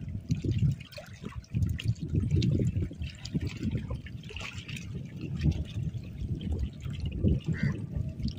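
Gusty wind rumbling on the microphone over water lapping against a rocky riverbank.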